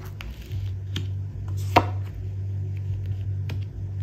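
Tarot cards being laid down and tapped onto a table mat: a few light taps and one sharp slap a little under two seconds in, over a steady low hum.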